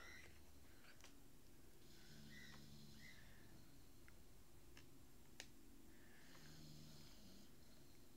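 Near silence: faint room tone with a low steady hum, and one small click about five and a half seconds in.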